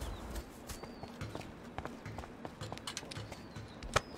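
Footsteps of several people walking off across a sports field: soft, fairly even steps with scattered small clicks, and one sharper click near the end.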